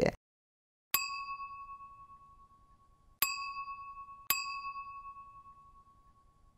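A bright bell-like chime sound effect, struck three times: about a second in, then twice more close together a little after three and four seconds. Each ding rings clearly and fades out over about two seconds.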